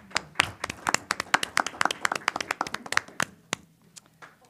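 A small group of people clapping, individual claps clearly separate rather than a dense crowd roar, thinning out and stopping about three and a half seconds in.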